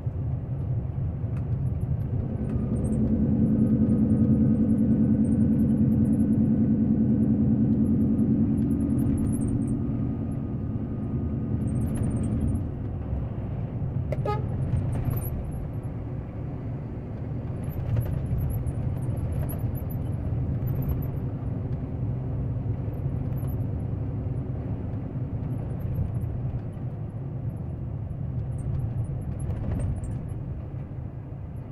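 Road noise and a truck's diesel engine heard from inside the cab, a steady low rumble. From about two seconds in until about twelve seconds a stronger, even-pitched engine drone rides on top, and it is the loudest part; a light click falls about fourteen seconds in.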